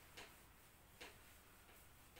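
Near silence with faint swishes of a duster wiping a whiteboard, short strokes about a second apart.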